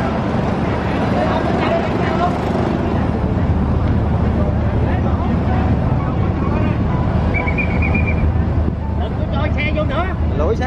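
The Phu Quoc Express 7 high-speed catamaran ferry's engines running with a steady low rumble as it comes in to dock, with faint voices of people nearby.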